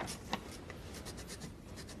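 Low room tone with faint rustling or scratching and two soft clicks, one right at the start and another about a third of a second in.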